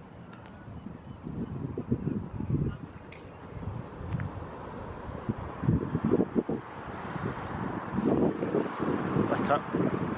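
Wind buffeting a handheld camera's microphone in irregular low gusts, with indistinct voices in the background.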